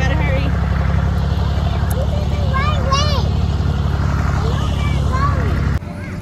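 A loud, steady low rumble with faint voices behind it, cutting off abruptly near the end.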